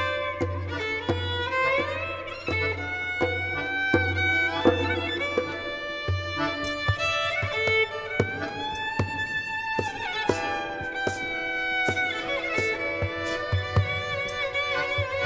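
Violin playing an improvised melody with slides between notes, over a low, regularly pulsing accompaniment.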